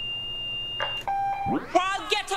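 A steady high tone, alarm-beep-like, from the music video's soundtrack, cutting off about a second in and followed by a brief lower tone. About one and a half seconds in, a voice slides up in pitch and the vocals of the song's intro begin.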